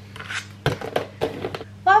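A table knife and kitchen things handled and set down on a wooden worktop: a few light knocks and clatters, the sharpest about two-thirds of a second in. A woman's voice starts a word near the end.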